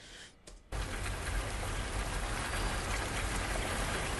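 Steady rain falling, a rain sound in a music video's soundtrack, starting suddenly just under a second in after a brief hush.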